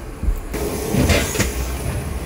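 Footsteps on the hollow floor of an airport jet bridge, with low thumps and rumble underfoot; about half a second in a steady hiss comes up, and two sharp knocks follow.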